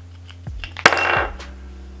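A sharp click a little under a second in, then a short metallic rattle: the side plate of a baitcasting reel being popped off and coming free.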